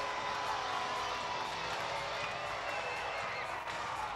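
Arena crowd cheering and applauding a home-team goal, a steady wash of noise.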